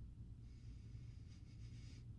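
A faint, long sniff through the nose, breathing in a bar of soap's scent, starting about half a second in, over a low steady hum.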